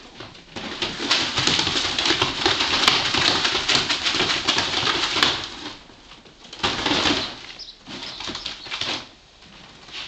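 Ferrets playing excitedly, with rapid low clucking (dooking) over the rustle and scrape of a corrugated plastic tube being shaken and dragged across the floor. The noise comes in a long busy stretch, then two shorter bursts later on.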